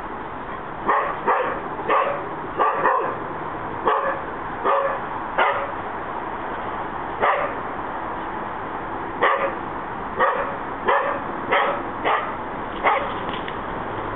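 A dog barking repeatedly, about fifteen short barks starting about a second in, spaced roughly half a second to a second apart, with a longer pause of a few seconds in the middle.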